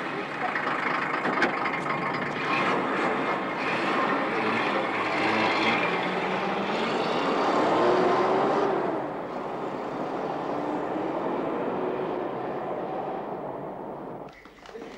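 Engine and tyres of an off-road SUV driving off, growing louder to a peak about eight seconds in, then dropping away.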